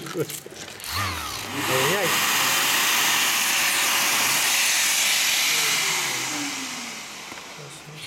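Mirka CEROS electric random-orbital sander starting up about a second and a half in and sanding a wooden board, a steady loud hiss of abrasive on wood. About six seconds in it is switched off and winds down with a falling whine.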